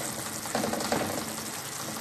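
Kangkong and eggplant sizzling and simmering in a wok of soy sauce and vinegar while a silicone spatula stirs them: a steady, even sizzle.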